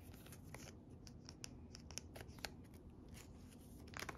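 Faint scattered ticks and light scrapes of a photocard being handled and slid into a clear plastic binder-page sleeve.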